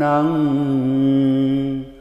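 A man chanting a Buddhist protective mantra in Pali, drawing out one long syllable at a nearly steady pitch. It dies away just before the end.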